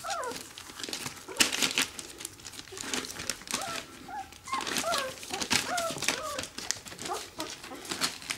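Young puppies whimpering in short, high, sliding squeaks, many in quick succession, as they root and nuzzle for a teat. Newspaper under their paws rustles and crinkles throughout.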